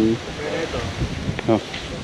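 Mostly speech: a voice trailing off at the start and a short spoken word about one and a half seconds in, over steady outdoor background noise with wind on the microphone.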